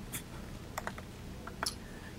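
A few faint, short clicks of laptop keys being pressed to advance the presentation slides, over quiet room tone.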